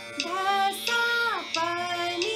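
A woman singing an Indian classical sargam alankar, a practice exercise in short stepped notes in a four-beat pattern, with one higher note sliding down about halfway through. A steady drone is held underneath.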